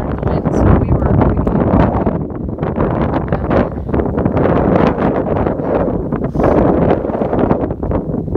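High wind buffeting the microphone: a loud, continuous, gusty rumble with rapid crackling buffets, dipping a little about two seconds in.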